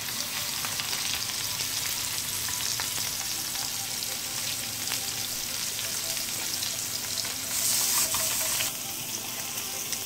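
Small masala-marinated fish shallow-frying in a thin layer of oil on a flat iron tawa: a steady sizzle with fine crackles, briefly louder for about a second near the end.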